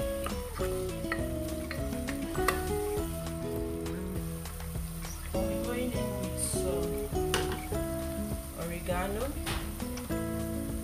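Chopped onions and tomato paste sizzling in hot oil in a pot, with scattered knocks and scrapes of a wooden spoon stirring, under background music.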